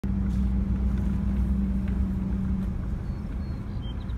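A car's engine running with a steady low hum, which eases off a little about two and a half seconds in.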